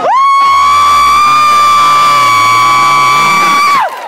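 One very loud, high held vocal note from a high voice. It scoops up into pitch, holds almost steady for nearly four seconds and drops away near the end.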